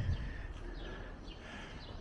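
Outdoor ambience: a low steady rumble with a few faint, short bird chirps.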